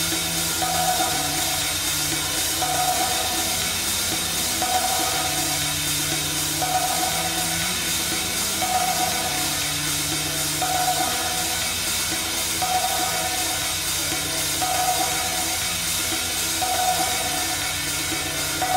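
A live pop band playing a song: a repeated mid-pitched note about every two seconds over a shifting bass line, with drums.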